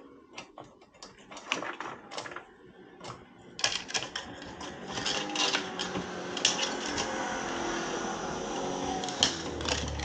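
Metal roller chain clinking and rattling as it is worked by hand onto a motorcycle's rear sprocket: scattered clicks at first, then a dense run of clattering from a few seconds in, with a faint steady hum under it in the second half.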